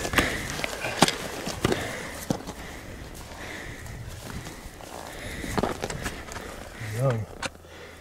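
Rustling and scattered sharp knocks from handling a mountain goat carcass and moving about on rocky tundra, over a steady noisy outdoor background. A short voice sound comes about seven seconds in.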